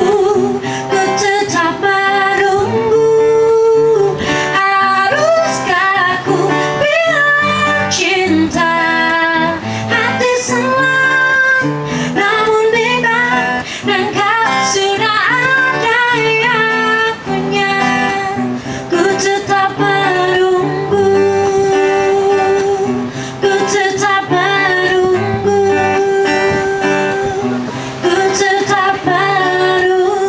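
A woman singing a song to her own acoustic guitar accompaniment, the guitar strummed and picked under the vocal melody.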